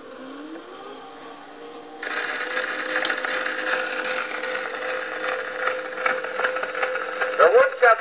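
1910 Edison Model 1A Amberola playing an early 1904 Edison two-minute black wax Gold Moulded cylinder: a faint hum with a short rising glide in the first second, then the reproducer's stylus sets down on the turning record about two seconds in and steady surface hiss and crackle follow through the horn. Near the end the cylinder's recorded spoken announcement begins.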